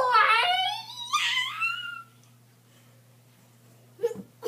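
A child's high-pitched wail, wavering and gliding up in pitch, that stops about two seconds in.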